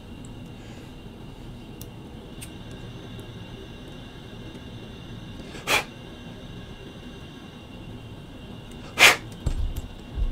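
Faint scraping and ticking of a hobby knife blade chamfering small holes in a carbon-fibre RC chassis plate, over quiet room tone. Two short rushing noises cut in near the middle and again near the end, the second the loudest, followed by a few soft low knocks.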